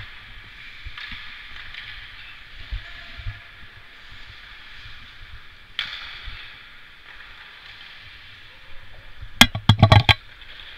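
Indoor ice hockey rink ambience: a steady hiss of play on the ice, one sharp knock about six seconds in, then a rapid cluster of loud knocks and thumps near the end as the helmet-mounted camera is jostled.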